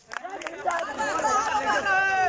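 Voices of a crowd of marchers, several people shouting and talking at once over one another. It starts almost silent and swells within the first second.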